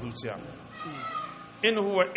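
A man's voice reciting a Quranic verse in Arabic in a melodic chant, which comes in loudly near the end. A quieter, drawn-out pitched sound fills the pause before it.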